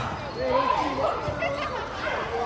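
Children's voices calling out across an indoor volleyball court, with a few dull thumps of ball or feet on the court floor.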